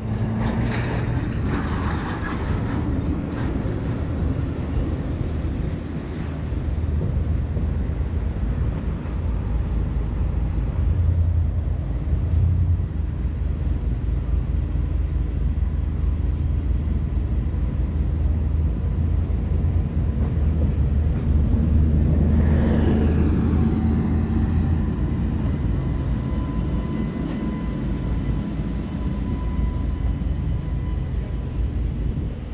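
Street traffic rumble with a red New Orleans Canal Street streetcar approaching on the rails and rolling past close by near the end. There is a louder swell about two-thirds of the way through, and a thin steady whine in the last few seconds as the car draws near.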